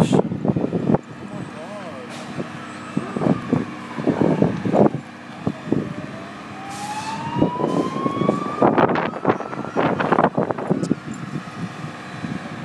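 Emergency vehicle siren wailing slowly, falling in pitch and then rising over several seconds, under people's voices and a steady engine hum.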